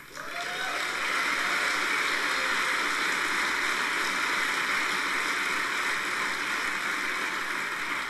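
Audience applauding. It builds up over the first second, holds steady and eases off near the end.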